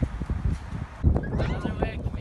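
Wind rumbling on a phone microphone, with a high, wavering vocal sound, rising and falling in pitch, in the second half.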